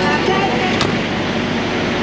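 Steady rumble of vehicle engines at a truck stop fuel island, with one sharp click just under a second in.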